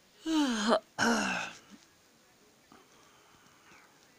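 A cat meowing twice in quick succession, each call about half a second long and falling in pitch.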